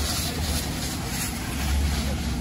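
Steady low rumble under a hiss of water spray from fire hoses playing onto a smouldering, burned-out RV.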